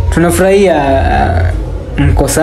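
A person's long, wordless vocal sound, lasting about a second and a half, over a steady low background hum.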